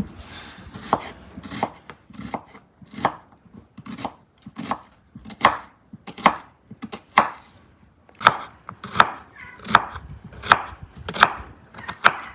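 Kitchen knife slicing an onion on a wooden cutting board, each stroke ending in a sharp knock of the blade on the board, about one and a half a second, louder in the second half.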